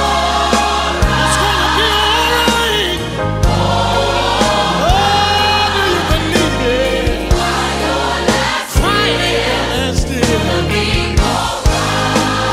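Gospel choir singing over a band, sustained and sliding vocal lines above a steady bass line and regular drum hits.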